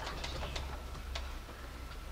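Quiet room tone: a steady low hum with scattered faint taps and clicks of pens on paper as students write.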